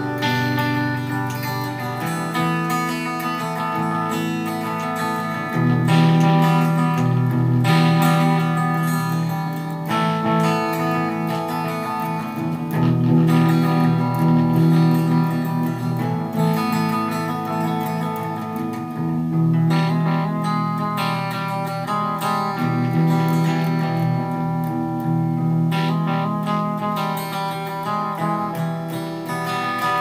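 Electric guitar played through an amplifier: picked and strummed chords, changing every two seconds or so.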